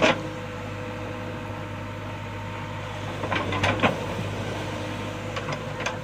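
JCB backhoe loader's diesel engine running steadily at low revs, with a few short sharp knocks and clanks as the backhoe works the soil: one at the start, a cluster a little past the middle and more near the end.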